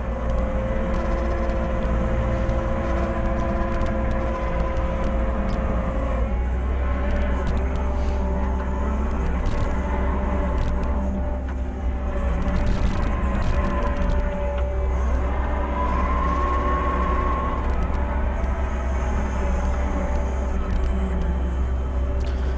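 Compact loader's engine running steadily under working load, heard from inside the cab, with tones that shift in pitch as the hydraulics work the bucket. A few short knocks come about halfway through as the bucket moves dirt.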